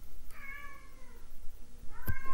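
Domestic cat meowing: one drawn-out meow about half a second in, sliding slightly down in pitch, with a second meow starting right at the end.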